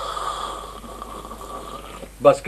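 A man slurping hot tea from a small cup: one long, noisy, drawn-out slurp that starts suddenly.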